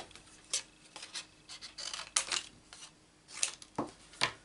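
Scattered light clicks and taps with soft rustling: paper pieces and thin metal craft dies being picked up and set down on a desk, about five or six distinct clicks.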